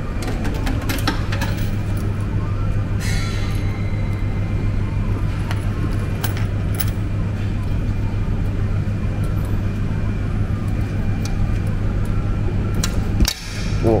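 Steady low hum and background din of an arcade floor lined with claw machines, with scattered light clicks and knocks from the machines.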